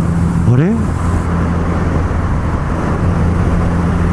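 Kawasaki Z900RS inline-four engine running at steady cruising revs, a constant low hum mixed with road and wind noise.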